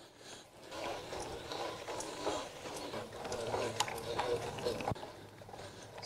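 Gravel bike ridden slowly over soft, bumpy grass: tyre noise with scattered clicks and rattles from the bike.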